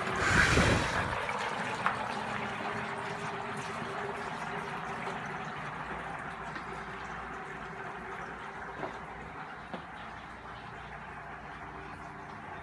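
Dry ice pellets sublimating in hot water, bubbling steadily and slowly growing fainter, with a brief louder rush of noise in the first second.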